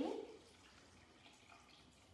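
Faint dripping of a glaze-and-water mix from a soaked microfiber cloth into a bowl.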